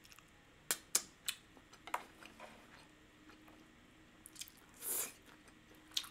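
A person chewing a mouthful of noodles close to the microphone, with a few sharp wet mouth clicks in the first two seconds and softer ones after. About five seconds in comes a short breathy hiss.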